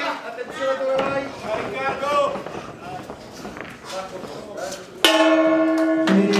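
Men's voices shouting over the fight, then about five seconds in the boxing ring's bell rings with a sudden loud onset and keeps ringing, signalling the end of the round.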